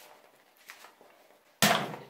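A Pringles can being opened: faint handling, then near the end a sudden loud rip as the foil seal is pulled off.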